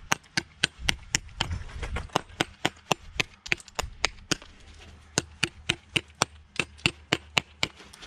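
Hammer striking the edges of a hand-held stone in a quick series of sharp knocks, several a second with short pauses: the corners are being chipped off to round the stone for laying in a curved wall. The hammer is not one meant for stone dressing.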